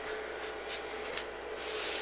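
A sponge rubbed across a chalkboard, erasing chalk: a few short wiping strokes, then a longer one near the end.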